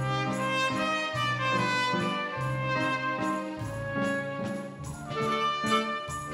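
A trumpet playing a melody over a live band accompaniment, with a steady bass line underneath.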